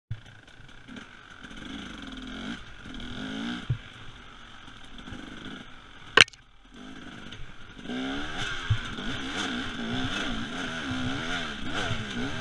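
Husaberg TE300 two-stroke enduro engine revving up and down with the throttle on a trail ride. A single sharp crack about halfway through is the loudest sound, followed by a brief lull before the engine picks up again and runs harder. There are a couple of lighter knocks as well.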